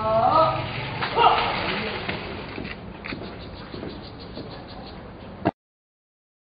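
A long-drawn shouted drill command that ends just after the start, then a short loud shout about a second in, followed by a run of light, evenly spaced clicks or steps. The sound cuts off abruptly near the end.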